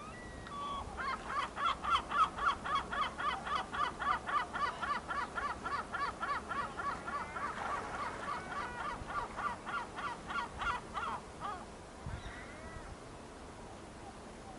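A bird calling a long, rapid series of harsh, evenly repeated notes, about four a second, for roughly ten seconds, ending a little before the close with a fainter short call.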